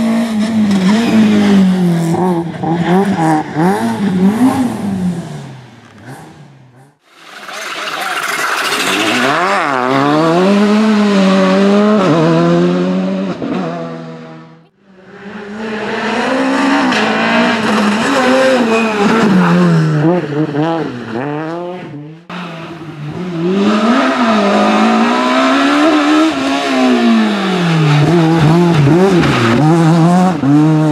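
Rally cars passing the spectator one after another, a Peugeot 208 R2 and a Renault Clio S1600 among them. Each engine is revved high, its pitch rising and falling with gear changes and lifting off for corners. There are four separate passes, with the sound dropping away between them about seven, fifteen and twenty-two seconds in.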